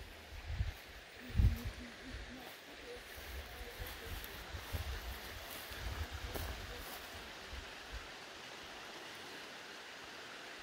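Wind buffeting the microphone in irregular low rumbles for the first eight seconds or so, over a steady breezy hiss that carries on alone near the end. A short low voice-like sound comes about a second and a half in, during the loudest rumble.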